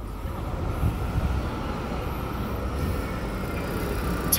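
Fire engine's diesel engine rumbling as the truck approaches along a city street, growing steadily louder. It runs without a siren, returning to quarters.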